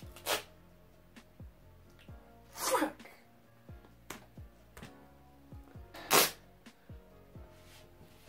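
Duct tape being pulled off the roll in three short, loud rips: just after the start, near three seconds and about six seconds in. Faint background music runs underneath.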